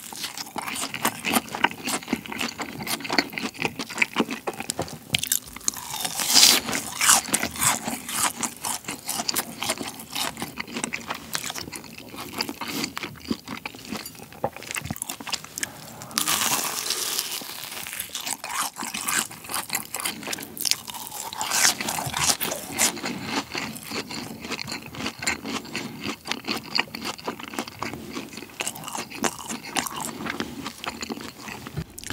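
Close-miked crunching and chewing of BHC cheese balls, deep-fried balls with a crisp glutinous-rice shell and a cheese filling. The loudest crunching bites come about 6, 16 and 22 seconds in.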